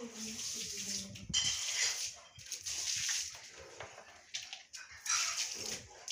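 Water spraying onto garden plants as they are watered, a hiss that comes and goes in several bursts.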